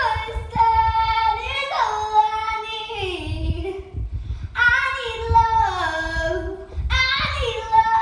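A young girl singing her own song without accompaniment, holding long notes that slide down in pitch. There are three phrases, with short breaths between them.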